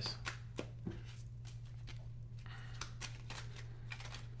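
A deck of oracle cards being shuffled by hand: a run of irregular soft clicks and flutters as the cards slide and slap together. A low steady hum sits underneath.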